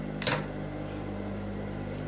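A steady low electric hum from the idling motor of an industrial sewing machine, with one short rustle of the cotton fabric being handled about a quarter second in.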